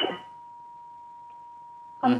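A steady, unbroken electronic tone at one pitch, like a line or test beep, over faint hiss. A voice cuts off at the very start.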